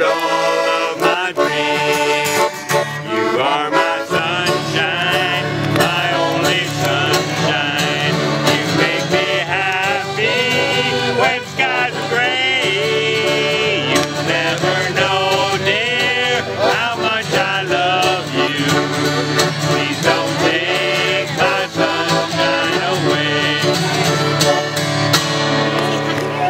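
Acoustic guitar strumming and a button accordion playing a country-style tune together, a steady instrumental passage with no clear words.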